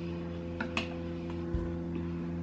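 A metal spoon clicking faintly twice against the bowl and teeth while a mouthful of thick frozen smoothie bowl is eaten, with a small low thump about one and a half seconds in. A steady low electrical hum runs underneath.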